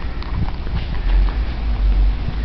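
Low wind noise on a handheld camera's microphone, getting stronger about a second in, with a few light knocks of footsteps on concrete.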